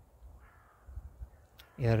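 A faint bird call, likely a crow's caw, heard in a pause over a low rumble. A man's voice comes back near the end.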